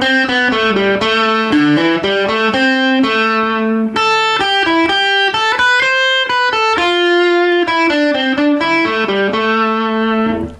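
Electric guitar improvising a single-note lead line from the A minor scale, playing the scale's notes in no set order. The notes come one at a time, some short and some held for about a second.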